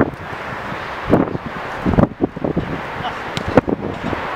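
Small-sided football match on an outdoor artificial pitch: players calling out, with a few sharp thuds of play about one, two and three and a half seconds in, over steady wind noise on the microphone.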